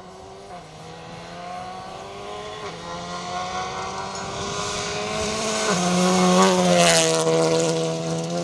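Renault Clio Rally3 Evo rally car's turbocharged four-cylinder engine driven hard on a gravel stage, rising in pitch through the gears with a shift every two to three seconds and growing louder as it approaches. It is loudest as it passes, with a burst of gravel and tyre noise near the end.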